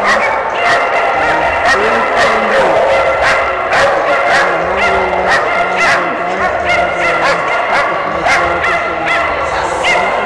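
Many dogs barking and yipping at once, a dense, continuous run of overlapping sharp barks and short yelps from dogs held in the lanes before flyball racing.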